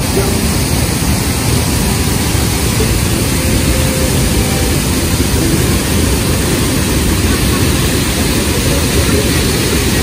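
Loud, steady rush of a waterfall pouring into a rock pool.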